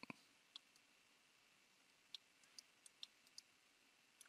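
Faint, scattered clicks of a computer mouse, about eight in four seconds, over near-silent room tone, the first right at the start slightly fuller than the rest.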